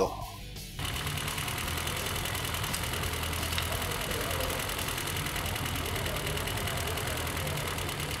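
Four-cylinder distributor-ignition engine on a test stand idling steadily, with its vacuum advance disconnected while the ignition timing is set. The sound cuts in about a second in and then holds an even, unchanging idle.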